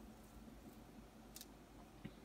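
Near silence: room tone, with one faint click about one and a half seconds in as hands wrap string around wooden craft sticks.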